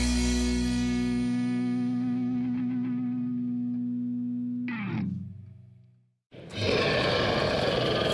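Intro music: a held, distorted electric-guitar chord rings and slowly fades, ending in a quick falling swoop about five seconds in. After a moment of silence, a loud dense noise starts up just past six seconds and runs on.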